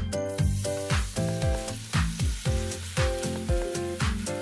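Pancake batter sizzling in hot oil in a frying pan, the sizzle coming in just after the start. Background music with a steady beat plays throughout.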